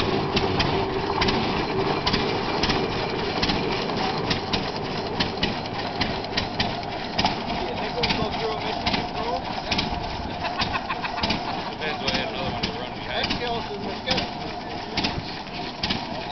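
Hart-Parr tractor engine running, with a quick, irregular string of sharp pops and ticks over a low rumble. People talk in the background.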